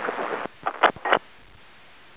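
Aviation VHF airband radio: a burst of transmission noise cuts off about half a second in, then three short clicks of keyed transmissions, then faint steady receiver hiss.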